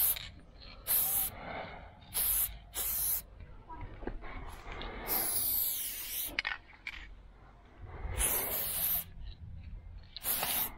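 Aerosol spray paint can hissing in a series of short bursts, with a longer spray about five seconds in, as lines are painted on a wall.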